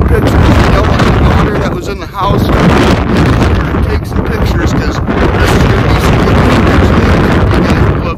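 Strong wind buffeting the phone's microphone: a loud, constant rumble that largely drowns out a man's talking.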